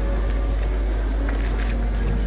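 A steady low rumble that holds at an even level, with a few faint ticks on top.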